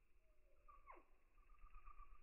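Near silence, with one faint, quick falling squeak about a second in.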